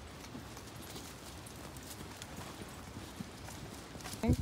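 Footsteps of hikers walking on a dirt trail covered in dry leaf litter, faint and regular.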